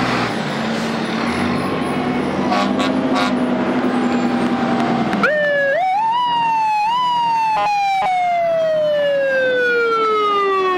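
Fire trucks passing in a loud procession, their engines and horns sounding together. About five seconds in, a fire truck's mechanical siren winds up in three pulses, then winds down in one long falling wail.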